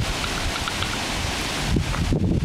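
Wind buffeting the microphone outdoors: a steady hiss with uneven low rumbling gusts.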